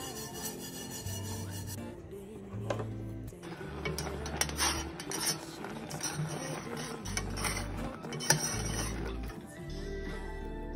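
A spoon scraping and stirring porridge in a stainless steel saucepan, a rough rasping from about two seconds in until near the end, over background music with a steady bass line.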